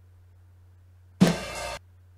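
One drum hit from a sliced drum loop, played back very slowly in Bitwig's slice mode, comes a little over a second in and cuts off abruptly after about half a second. The hit is cut short because the tail setting is at None, which leaves silence between the slices.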